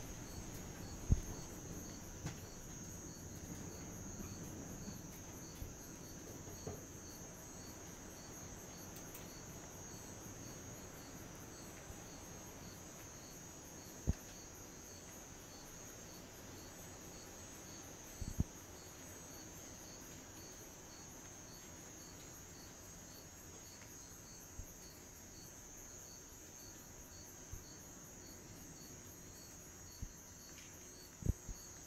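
Faint, steady high-pitched insect trilling with a short chirp repeating at an even pace, and a few soft knocks now and then.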